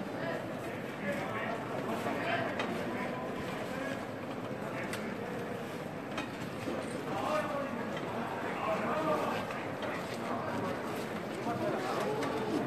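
Footsteps of a large group of throne bearers walking forward in short, quick steps under a processional throne, with low voices murmuring, echoing in the cathedral.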